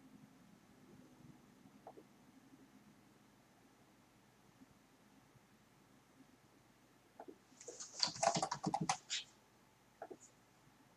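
A short burst of typing on a computer keyboard near the end: a quick run of key clicks lasting about a second and a half, after a long stretch of quiet room tone.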